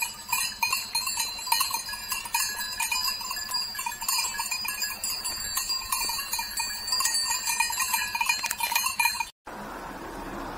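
Bells on a herd of grazing goats, clanking and ringing irregularly with many overlapping strikes. The bells cut off abruptly near the end and give way to a steady hiss.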